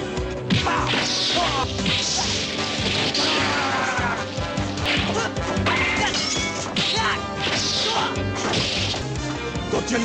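Fight-scene sound effects: hits and blows landing about once a second over background music.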